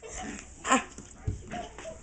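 A small dog gives one short bark during rough play, with scuffling and a low thud of feet on a wooden floor.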